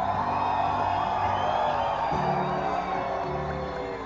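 Live rock band music in an instrumental passage: a held lead line over a steady bass, with no singing.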